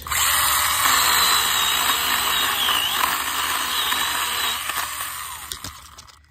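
STIHL GTA 26 mini battery chainsaw starting up suddenly and running, cutting a fallen branch, with a high motor whine that dips briefly in pitch about three seconds in. It winds down near the end.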